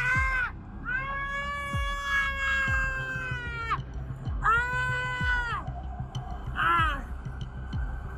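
A woman screaming "Ahh!" in long, high, held wails: a short one at the start, one held for nearly three seconds, another of about a second in the middle, and a short one near the end.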